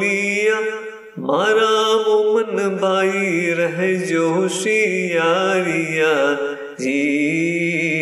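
A solo voice chanting a ginan, an Ismaili devotional hymn, in long, wavering held notes. It breaks off briefly about a second in and again near seven seconds.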